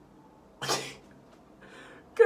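A single short, sharp burst of breath from a person, about half a second in.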